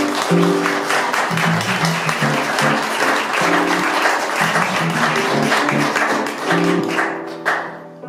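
Audience applauding during a tune while the band keeps playing, electric bass and keyboard notes carrying on under the clapping. The applause dies away near the end and the music continues alone.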